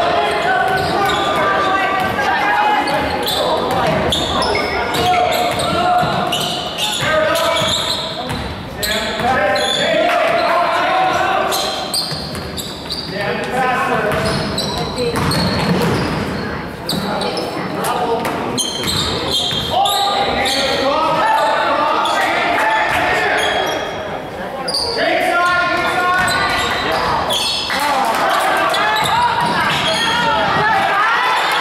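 A basketball being dribbled on a gym court, with voices of players and spectators echoing in a large hall.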